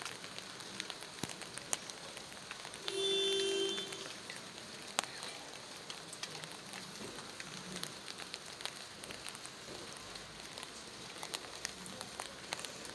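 Steady rain falling, an even hiss with scattered drops ticking. About three seconds in, a steady pitched tone like a horn sounds for about a second, louder than the rain.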